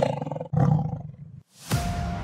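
Animal roar sound effects: a long roar fading out about half a second in, then a second, shorter roar that dies away. Near the end a rising whoosh ends in a sharp hit.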